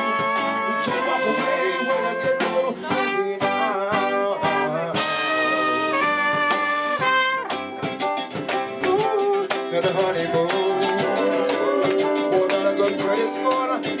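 Live band playing an instrumental passage between vocal lines, with horns and electric guitar over the rhythm section.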